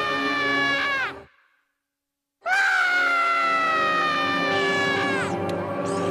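A cartoon girl's voice bawling: two long wailing cries, each slowly falling in pitch and breaking off at the end, with about a second of silence between them.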